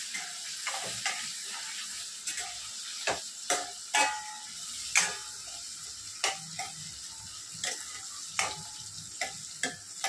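Chopped onions and chillies sizzling in hot oil in a stainless steel kadai, with a steady hiss. A steel spoon clinks and scrapes against the pan at irregular intervals, about once or twice a second, as the mixture is stirred.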